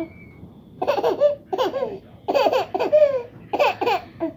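A baby laughing in four short bursts of high-pitched, up-and-down giggles.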